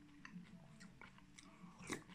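Faint chewing of a mouthful of soup, with small soft mouth clicks, and one short louder sip from a spoon near the end.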